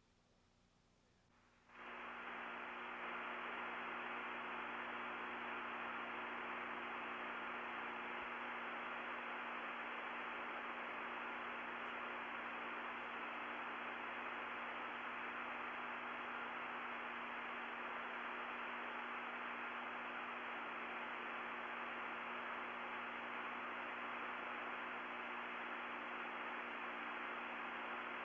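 Steady radio-channel static with a low hum, switching on abruptly about two seconds in: an open communications loop carrying no talk.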